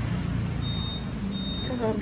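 Two high, steady electronic beeps, each under half a second, with a short gap between them, over a low background rumble.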